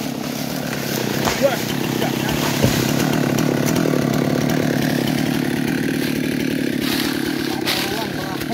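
Husqvarna chainsaw idling steadily after the felling cut. A few short, sharp knocks and cracks come in the first three seconds as the felled teak tree comes down.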